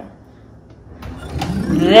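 A kitchen drawer being pulled open on its runners: a sliding noise that begins about a second in and grows louder, with a few light clicks at its start.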